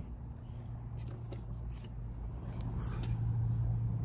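A steady low hum that grows slightly louder near the end, with a few faint scattered clicks.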